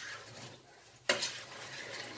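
A spoon stirring chunks of potato and onion in liquid in a stainless steel pot, quiet at first, with one sudden scrape against the pot about a second in.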